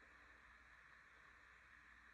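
Near silence: faint steady room tone with a low hiss.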